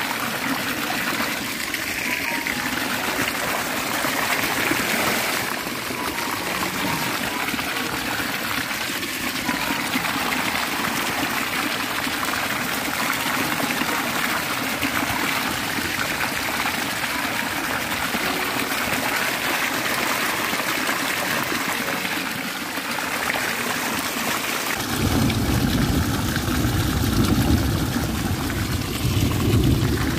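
Water gushing from a pipe outlet and splashing onto a stretched mesh net in a steady rush. About 25 seconds in, a deeper rumble joins it.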